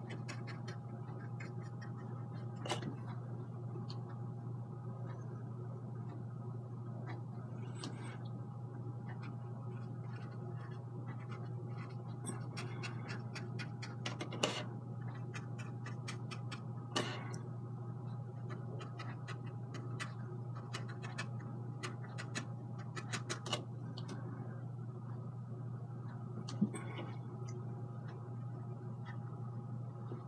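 Small irregular ticks and clicks of a fine brush working oil paint on a painting panel, with a few louder clicks scattered through, over a steady low room hum.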